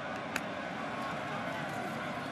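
Steady roar of a stadium crowd, with one sharp click about a third of a second in.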